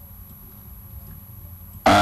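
A low, steady background rumble with a faint hum. Near the end a man's voice suddenly starts speaking, much louder than the rumble.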